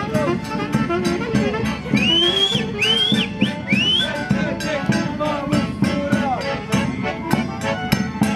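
Maramureș folk dance music played live on accordion and fiddle by a marching band, with a steady beat. Three short high rising calls come through the music between about two and four seconds in.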